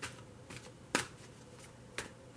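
A large tarot deck being shuffled by hand, the cards slapping together in a few short, sharp snaps, the loudest about a second in.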